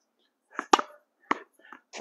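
Tennis ball rallied against a practice wall: several sharp knocks of racket strikes, the ball hitting the wall and bouncing on the hard court, the loudest a quick double knock a little under a second in.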